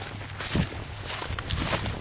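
Footsteps swishing through tall, dry grass, several steps in a row.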